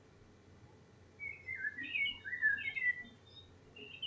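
A bird chirping: a quick run of short, twisting chirps for about two seconds starting a second in, and one more brief chirp near the end.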